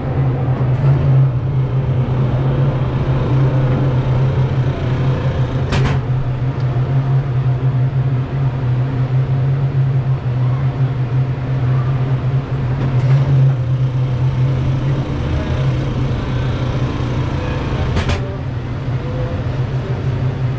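Ride vehicle of an amusement-park car ride rolling slowly along its track, a steady low hum and rumble coming through the car body, with a sharp click about six seconds in and another near the end.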